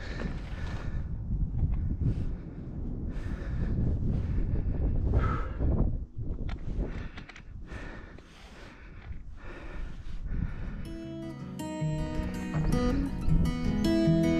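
Footsteps on a stony dirt track at walking pace, about one step a second, with wind noise on the microphone. About eleven seconds in, acoustic guitar music starts.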